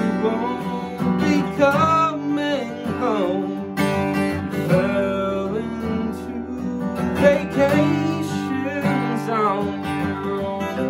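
Steel-string acoustic guitar flatpicked, picked notes and strums, with a man's voice singing along.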